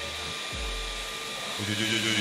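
Handsafe bench circular saw running steadily, its blade spinning freely at speed before the finger-detecting brake is triggered, with a voice starting near the end.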